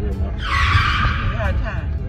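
A tyre screech about a second long, starting suddenly about half a second in and the loudest sound here, over the low rumble inside a car.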